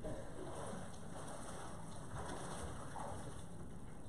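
Faint, irregular sloshing of water in a baptistry as a man in chest waders wades out of it and climbs the steps.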